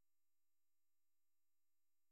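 Near silence: a pause with no audible sound.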